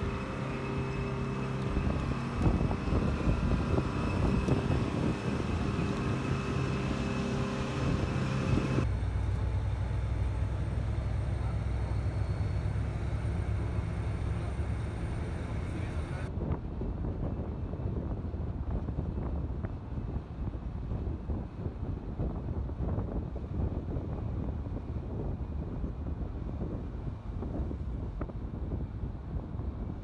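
A steady vehicle engine hum outdoors for the first several seconds, then, after a cut about nine seconds in, the low drone of a bus's engine with road noise, heard from inside the moving bus.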